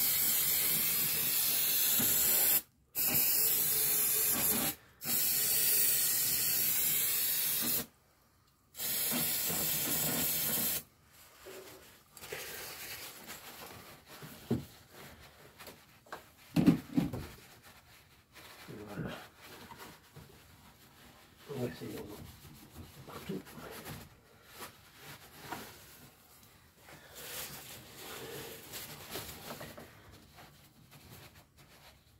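Aerosol cleaning spray hissing in four long bursts of two to three seconds each over the first ten seconds or so, as oil spilled around the oil filter is washed off. Then quieter rubbing of a rag over engine parts, with a few light knocks.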